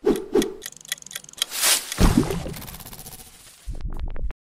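Sound effects from an animated title intro: a run of sharp clicks, then a whoosh and a deep hit about two seconds in that fades into fast ticking, then a low rumble near the end that cuts off suddenly.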